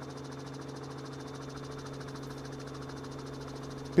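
A steady low hum made of a few held tones, unchanging throughout, with no speech.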